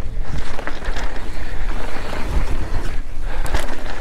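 Wind buffeting the on-bike camera's microphone as a mountain bike descends a dirt singletrack at speed, with the rumble of tyres on the trail and a few short rattling clicks from the bike.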